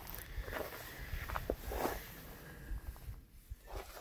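Faint rustling and a few soft clicks over a steady low rumble.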